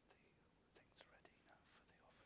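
Near silence with faint whispering: a few soft hissing sounds around a second in and again near the end.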